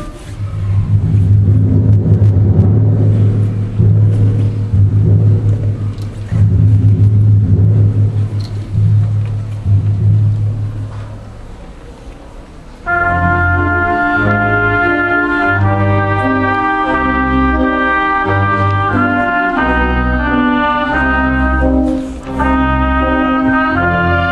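Live chamber orchestra playing in a reverberant church. A low, pulsing passage in the bass runs for about twelve seconds and fades. About thirteen seconds in, brass comes in loudly with a stepping melody over the lower parts.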